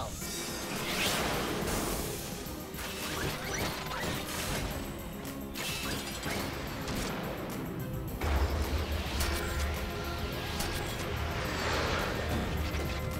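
Cartoon action soundtrack: driving music layered with sci-fi sound effects of a robot launching and transforming, with whooshes and mechanical clanks, and a heavy low rumble joining about eight seconds in.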